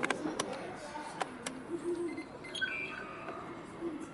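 Ice hockey play in a rink: a few sharp clacks of sticks and puck in the first second and a half, over faint voices of spectators.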